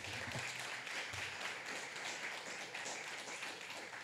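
Audience applauding steadily, the dense patter of many hands clapping.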